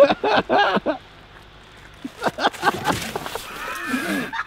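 A man's short, low vocal sounds in the first second, then a pause. From about two seconds in comes a run of short knocks and scuffs as he tumbles out of a car's rear door and falls into the snow on the pavement.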